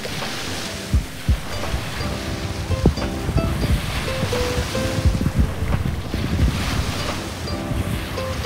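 Small waves breaking and washing up a sand beach, their hiss swelling a few times, with wind buffeting the microphone, under background music with a steady beat.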